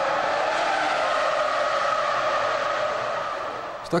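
Formula One car's V10 engine running at high revs, heard as a steady high-pitched drone that eases slightly near the end.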